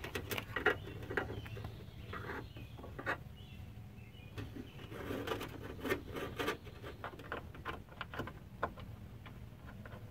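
Irregular small clicks, taps and rattles of plastic and metal as the plastic glide sliders and clips are worked onto the ball-joint ends of a BMW E36 window regulator inside the door.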